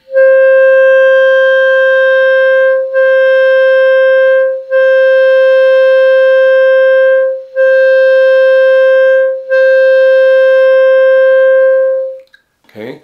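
Clarinet holding one long tone at a single steady pitch, cut off and restarted four times by stopping and replacing the air alone, without the tongue, so it sounds as five long notes with short breaks between them. This is a long-tone drill for clean air attacks and releases.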